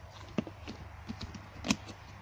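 Perforated clear plastic lid being pressed shut onto a plastic storage box: a few scattered plastic clicks and knocks, the loudest near the end.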